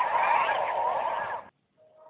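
Windows XP startup sound run through heavy audio effects, a dense warbling smear of wavering pitches. It cuts off suddenly about one and a half seconds in, and after a brief gap a new effected version with steadier held tones fades in near the end.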